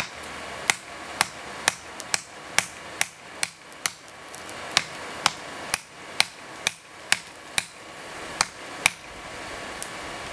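Hand hammer striking a red-hot railroad spike on a granite rock anvil, forging it out into a knife blade: sharp blows at about two a second with a short ring, stopping near the end with one last light tap.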